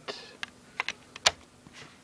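Several light plastic clicks from a DVD case being handled, as its hinged disc tray is turned to show the second disc.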